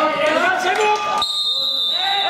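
Several voices shouting from the mat side during a wrestling bout. About a second in comes a thud, then a single steady, high-pitched whistle blast lasting about a second that stops the action.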